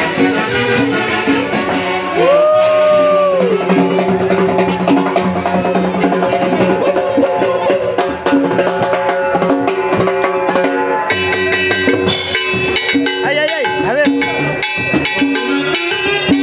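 A live dance band with a saxophone section, harp and timbales plays an upbeat tune over a steady percussion beat, with a voice calling out over it in the first few seconds. The band sound grows fuller and brighter about eleven seconds in.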